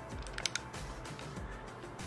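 Faint background music, with a few small clicks about half a second in from the plastic arm parts of a sixth-scale Iron Man Mark L figure being handled.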